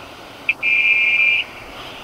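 A single electronic beep on the phone line: a brief click, then a steady high tone lasting just under a second, over faint line hiss.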